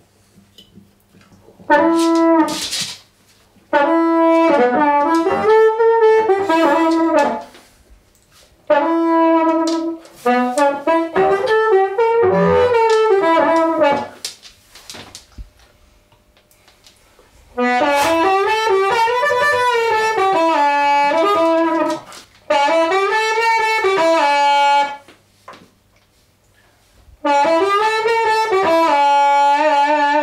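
Harmonica played into a bullet microphone cupped in the hands and through an overdrive and analog delay into an amplifier, giving a thick, distorted amplified-harp tone. It comes in several short phrases with notes bent up and down, separated by brief pauses.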